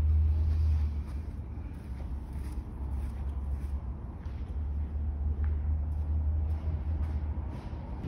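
A low, steady rumble with faint background noise above it.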